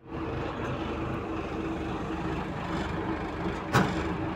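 Truck engine idling steadily with a low, even rumble, with a short burst of noise near the end.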